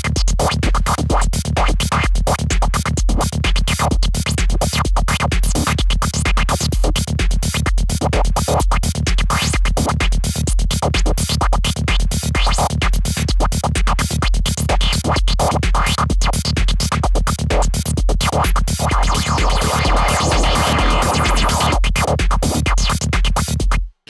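A dark prog psytrance track playing back from Renoise: a steady kick at about two beats a second over a bass line, with a distorted noise lead synth on top. A noisy midrange swell rises near the end, and the playback cuts off suddenly just before it ends.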